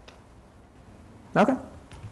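Speech only: a man says a single questioning "okay?" with a rising-then-falling pitch, over the quiet tone of a large room.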